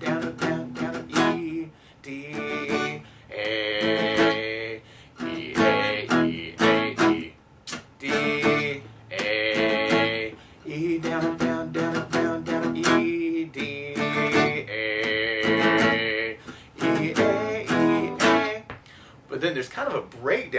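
Acoustic guitar strummed through a rock chord progression of E, D and A major, with single down strokes and down-up-down strokes. Each group of strums is followed by the chord ringing on.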